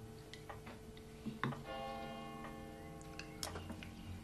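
Spoons and cutlery clicking against breakfast bowls and plates, a few scattered clinks over a faint steady hum. A soft held tone sounds from about a second and a half in until about three and a half seconds in.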